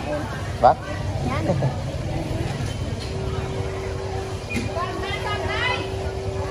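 Market ambience: short bursts of people talking over a steady low engine rumble. A steady hum joins about three seconds in.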